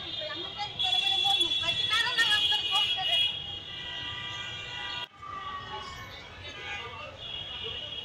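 Vehicle horns sounding in street traffic, one held loud and steady for about two seconds starting about a second in, among the voices of passers-by. The sound cuts off abruptly about five seconds in, then fainter horns and voices follow.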